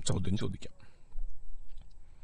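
A man's voice finishes a spoken phrase, then a short pause in which a few faint clicks are heard.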